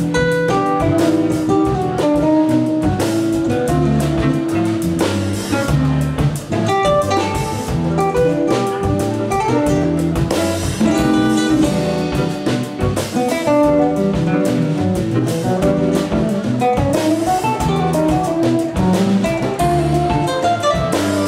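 Live flamenco-jazz band playing: a nylon-string Spanish guitar, a grand piano and a drum kit together, the guitar prominent, with quick note runs and steady cymbal and drum strikes.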